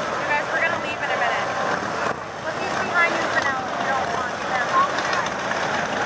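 Several touring motorcycles riding slowly past, their engines running at low speed under a steady mix of crowd voices.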